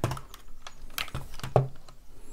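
A handful of sharp plastic clicks and knocks, five or six in two seconds, from handling a Dyson cordless stick vacuum while it is switched from max mode back to normal mode.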